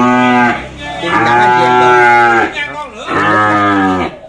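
Cattle mooing: three long, loud moos one after another.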